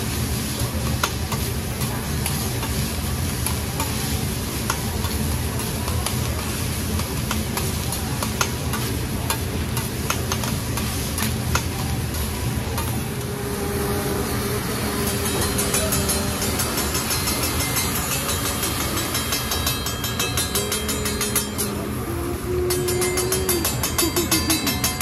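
Food sizzling loudly on a hibachi teppanyaki grill, with scattered clicks and scrapes of metal spatulas on the hot plate. Near the end it gives way to music with a steady beat.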